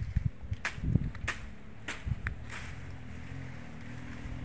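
A distant motor vehicle's engine running with a steady low hum, rising in about two and a half seconds in, heard from the mountain above the road. Before it come a few sharp clicks and low thumps.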